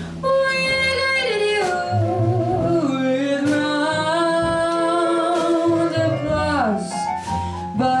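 Female jazz vocalist singing wordless scat over a live piano, bass and drums trio, holding long notes and sliding down in pitch near the end.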